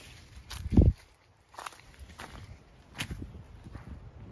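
Footsteps crunching on wood-chip mulch, a few steps spaced under a second apart. A loud low thump comes just under a second in.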